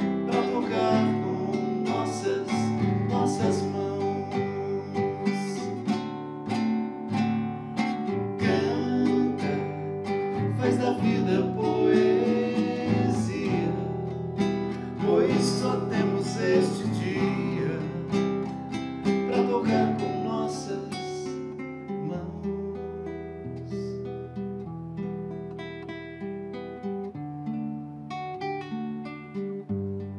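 Nylon-string classical guitar strummed in chords as song accompaniment, turning quieter and sparser about two-thirds of the way through.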